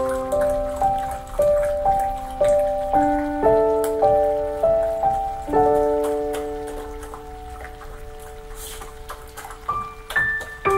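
Slow new-age piano piece: single notes and chords struck about every half second, then one chord held and left to fade away over the second half. Under it runs a crackle of small scattered clicks.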